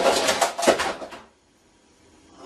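Clattering and knocking of a collapsed wooden computer desk hutch and the things on it, with a sharp knock about two-thirds of a second in. It cuts off abruptly about a second and a half in.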